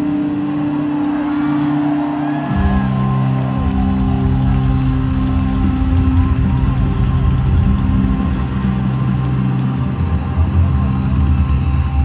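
A live rock band playing loudly through an arena PA, heard from the crowd. It opens on a held guitar chord with no low end, and about two and a half seconds in the full band with heavy bass and drums comes in and keeps going.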